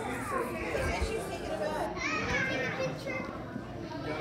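Children's voices and general chatter, with a child's high voice rising and falling about two seconds in.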